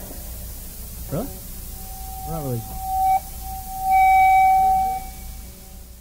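Guitar amplifier feedback ringing out after a live punk rock song ends. First come short sliding pitches, then a steady high tone held about a second, then again louder for another second, fading toward the end.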